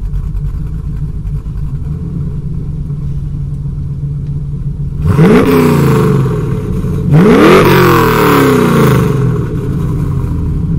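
Blueprint 350 small-block Chevy V8 crate engine in a 1980 Camaro, breathing through long-tube headers and an X-pipe dual exhaust, idling steadily and then free-revved twice, about five and seven seconds in. Each rev climbs quickly and falls back more slowly toward idle.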